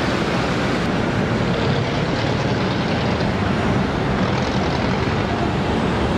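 Steady din of city traffic: an even hiss of passing vehicles over a low engine hum.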